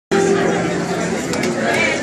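People chattering in a crowded bar room, with a steady low pitched tone held for about the first second.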